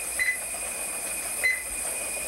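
Bedside cardiac monitor beeping with each heartbeat: two short, high beeps about a second and a quarter apart.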